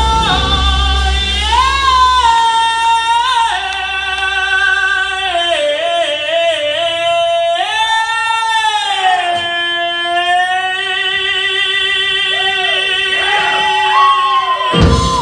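A singer's high voice holds long notes into a PA microphone, swooping up and down with vibrato. The band's bass and drums drop out about two seconds in, leaving the voice almost alone.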